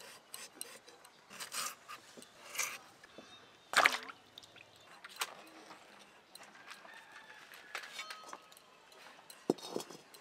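Firewood and cookware being handled at a clay wood-fired stove. Scattered light knocks and clinks, with one louder knock about four seconds in.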